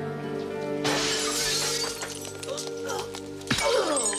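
Glass shattering with a loud crash about a second in, followed by smaller sharp clinks and another hard impact near the end, over a steady film music score.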